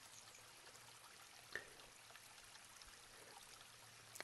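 Near silence: a faint steady hiss of room tone, with one faint click about a second and a half in.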